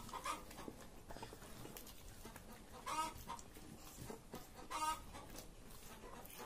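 A chicken clucking faintly: a few short clucks, a quick pair at the start, another pair about halfway, and one more near the end.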